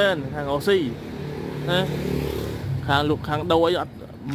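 Speech, with a steady motor-vehicle engine sound filling a pause of about two seconds in the middle.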